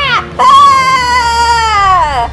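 A high-pitched voice screaming in two long held cries. The second starts about half a second in and slides down in pitch as it ends.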